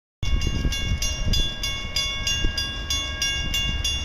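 Railroad grade-crossing warning bell ringing rapidly and evenly, about three to four strikes a second, over a low outdoor rumble, as an Amtrak train approaches the station.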